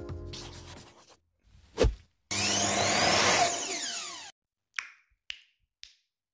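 Outro sound effects: the background music fades out, a single thump, then about two seconds of loud whirring, rushing noise that cuts off suddenly, followed by three short pops.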